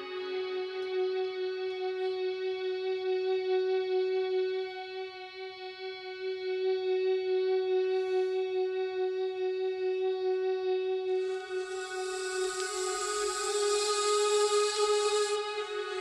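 Instrumental band intro: a keyboard synthesizer holds one steady note with a stack of overtones. About eleven seconds in, a bright hissing layer swells in on top of it.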